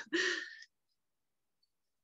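A voice trailing off in a short breathy exhale, like a sigh or soft laugh, fading out within about half a second, then dead silence as the call audio cuts out completely.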